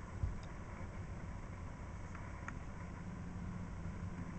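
A steady low background hum with a thin steady whine above it, like a small motor or appliance running in the room. A few faint light clicks come about two seconds in.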